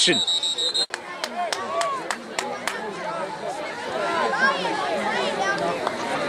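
A referee's whistle blows a steady, high tone and is cut off sharply about a second in. After that come many overlapping shouts and chatter from voices around a youth football field, with a few sharp clicks.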